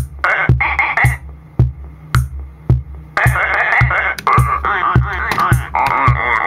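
Roland DR-55 drum machine playing a steady kick-drum beat, about two kicks a second, with short hi-hat ticks, synced with a circuit-bent Lego toy's sound chip playing warbling sampled noises. The toy's sound drops out about a second in, leaving only the drum beat, and comes back about three seconds in.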